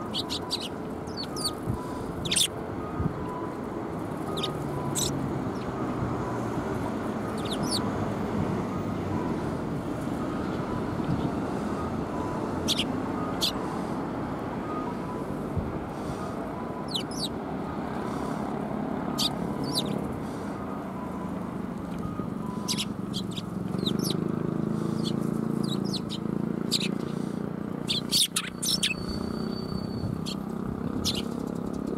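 Eurasian tree sparrows chirping in short, scattered calls, over a steady murmur of background voices.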